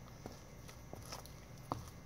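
Faint footsteps: a few soft, separate taps, the clearest near the end.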